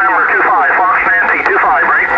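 Voice of a distant station in single-sideband on the 2-metre band, received over a sporadic-E opening and heard through the transceiver's speaker, thin and narrow with no low end. A brief steady whistle sits under the voice near the end.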